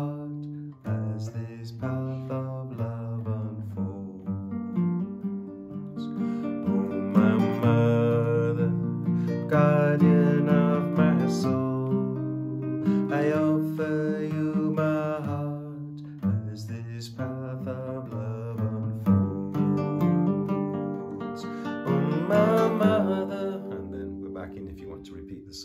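Nylon-string acoustic guitar played fingerstyle, picking out the song's melody notes over the chords in a rolling rhythm.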